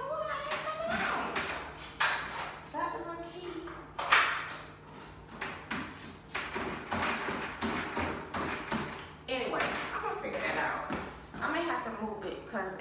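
Knocks, taps and thumps of someone stepping onto a treadmill and working its console while the treadmill does not start, one knock about four seconds in louder than the rest. A woman's low muttered speech is heard at the start and near the end.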